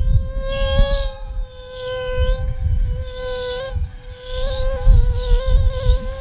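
A sustained insect-like electronic buzz holding one pitch with a slight wobble, over an irregular low rumble.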